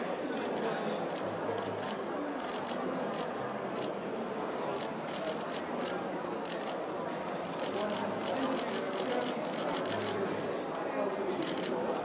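Indistinct murmur of people talking in a large, echoing hall, with runs of rapid camera shutter clicks from press photographers. The clicks are thickest a few seconds in and again near the end.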